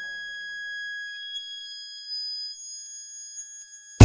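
Faint, steady, high-pitched electronic tones, like a held synthesizer whine, left over as a G-funk track fades out in the gap between songs. The tones stop shortly before the end.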